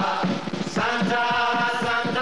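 Stage musical number: a choir singing held notes together over a steady beat. The voices break off briefly about half a second in and then come back.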